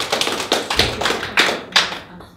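Small audience applauding, with individual hand claps distinct and uneven. A low thud comes about a second in.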